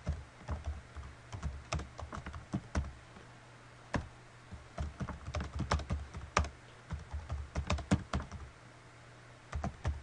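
Typing on a computer keyboard: runs of quick key clicks, pausing briefly about three seconds in and again near the end, over a faint steady low hum.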